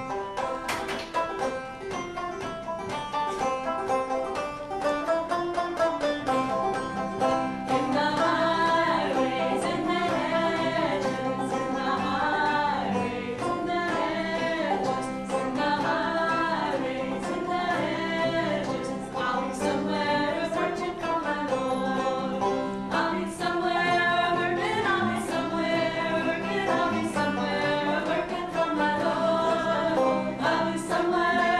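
Old-time string band playing: banjo, acoustic guitar and other plucked strings strumming a brisk intro, then several women's voices singing together from about eight seconds in over the accompaniment.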